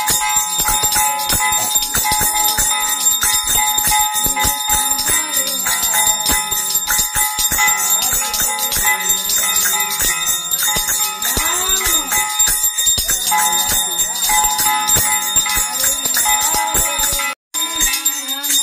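A puja hand bell rung rapidly and continuously during an aarti, a dense metallic jangle with a held ringing tone, over voices rising and falling underneath. The sound cuts out for a moment near the end.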